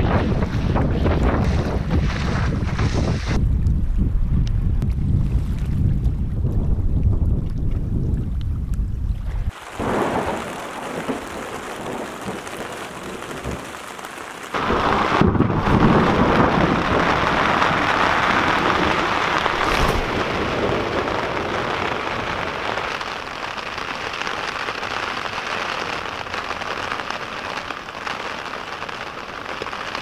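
Wind buffeting the microphone and lake water splashing against a canoe on choppy water, then after a sudden cut, steady rain on a tent, louder from about halfway through.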